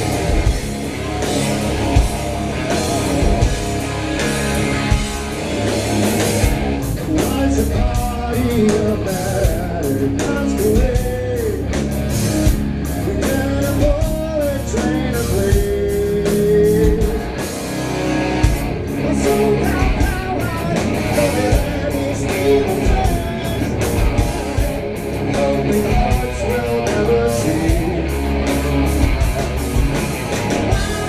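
Hard rock band playing live at full volume: distorted electric guitar through Marshall amplifiers over bass and a steady drum beat.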